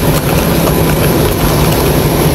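Loud, steady drone of aircraft and ramp machinery at an open boarding door: a low hum under a thin, high, unchanging whine, with a few light knocks.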